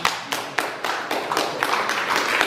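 An audience applauding: many hands clapping together in a dense, irregular patter.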